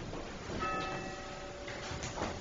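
A bell struck once about half a second in, its several clear tones ringing and fading over about a second. A few faint knocks follow near the end.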